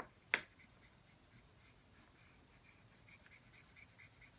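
Felt-tip marker caps clicking: two sharp snaps in the first half-second, the second louder. Faint, repeated scratching of marker tips colouring on paper follows, a little busier near the end.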